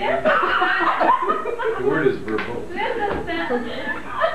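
Classroom talk and chuckling: several voices speaking at once, with snickers of laughter.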